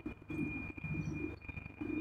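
A bird calling in a run of short, low notes repeating about every half second, with a faint steady high tone behind.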